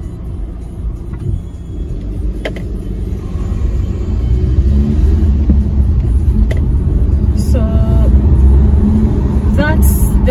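A car driving, its low road and engine rumble heard from inside, growing louder about four seconds in.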